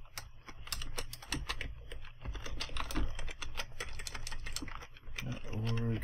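Computer keyboard typing: a quick, uneven run of keystrokes as a command line is typed out.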